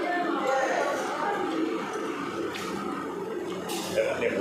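Indistinct background voices of people talking, with a short noisy slurp of noodles near the end.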